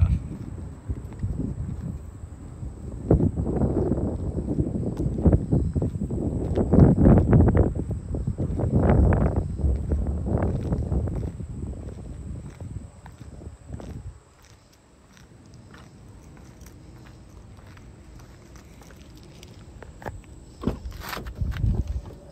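Footsteps on asphalt with wind rumbling on the microphone through the first two-thirds, then a quieter stretch, with a few sharp clicks near the end.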